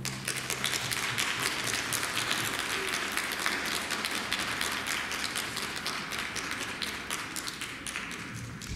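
Audience applauding, a dense steady clapping that thins slightly toward the end.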